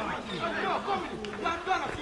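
Several people's voices chattering at once, with no clear words.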